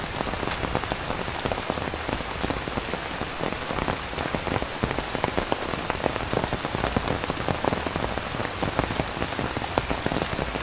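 Heavy rain falling steadily: an even hiss with a dense patter of close, sharp drop hits.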